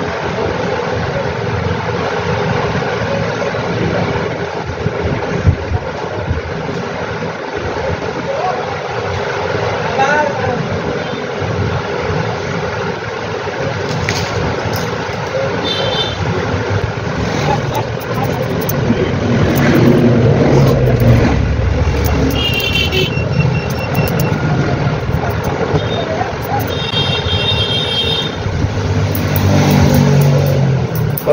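Steady road-traffic noise, with a vehicle rumbling past louder about two-thirds through and a few short, high horn-like beeps around the middle and near the end.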